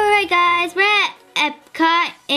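A young girl singing a few short, held notes whose pitch bends up and down, with brief breaks between them.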